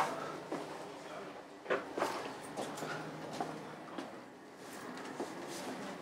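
A handful of sharp knocks and footfalls as a wooden cabin door aboard a ship is pushed open and walked through, over a steady low machinery hum.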